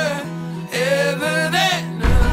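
A song: a voice sings long, wavering notes over a steady low held accompaniment note.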